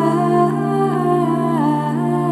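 Voices singing Gregorian chant. A melody steps from note to note over a steady, held low drone note.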